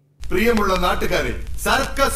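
A man speaking, cutting in abruptly just after the start over a steady low hum.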